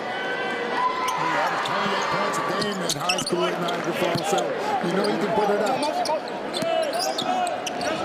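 Basketball arena sound: a ball bouncing on the hardwood court, sneakers squeaking, and the crowd and players chattering and calling out around a made free throw.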